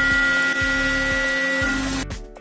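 Milling cutter chattering in a metal cut: a steady high-pitched squeal of several held tones over the noisy hiss of cutting. This is the sign of tool vibration from the tooth impacts falling out of step with the tool's own frequency. It cuts off abruptly near the end.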